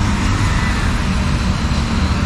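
Steady road traffic on a busy city road, with cars passing close by.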